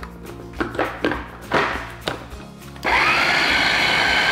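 A small press-top electric food chopper switches on about three seconds in and spins up to a steady whine, puréeing canned diced tomatoes. Background music plays before it starts.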